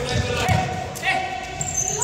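Ball game on a sports-hall floor: two low thuds of the ball and players' feet in the first half-second, with players calling out. It echoes in a large hall.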